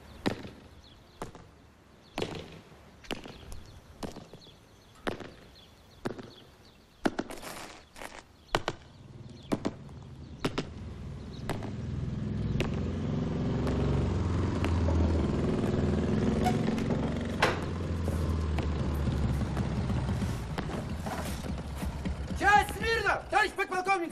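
Army boots striking a concrete yard in marching steps, about one step a second. From about ten seconds in a low rumble swells up and holds until shortly before the end.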